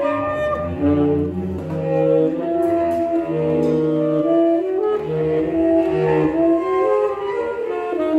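Tenor saxophone playing a wandering line of short notes, stepping up and down in free improvisation, over long, low bowed cello tones.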